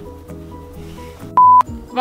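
Background music, cut by a short, loud, single-pitched electronic beep about one and a half seconds in.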